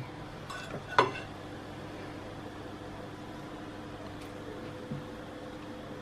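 A metal fork clinks once against a ceramic plate about a second in, over a steady faint hum.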